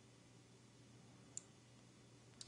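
Near silence: room tone, with one faint computer mouse click about a second and a half in.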